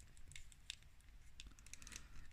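Faint, scattered small clicks and taps of hard plastic as a Panthro action figure and its little weapon are handled, the weapon being worked into the figure's hand.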